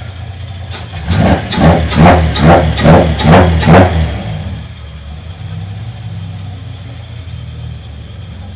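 Datsun 280Z's 2.8-litre inline-six, running on a FAST EZ-EFI fuel-injection retrofit, revved in about six quick throttle blips one after another, starting about a second in. It then drops back to a steady, smooth idle.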